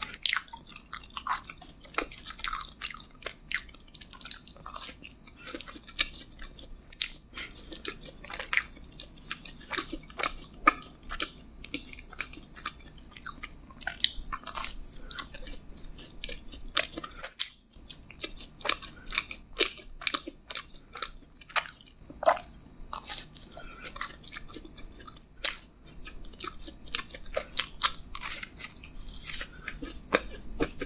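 Close-miked chewing of a soft pink-iced sprinkle doughnut: mouth sounds with many small, irregular clicks and smacks, and a brief pause a little past halfway.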